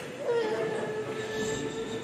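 A single held musical note that slides briefly into pitch about a quarter second in, then stays steady.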